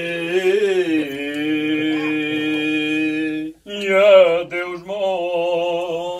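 A group of men singing unaccompanied in the slow cante alentejano style of a moda, holding long, wavering notes. The singing breaks off briefly just past halfway and a new phrase begins.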